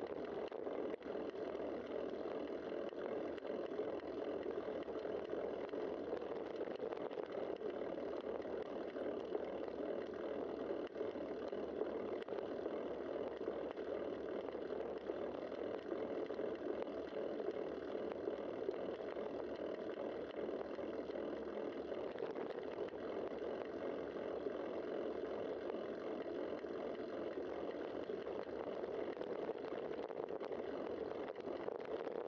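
Steady wind and tyre rolling noise picked up by a bicycle-mounted camera while riding on a paved trail.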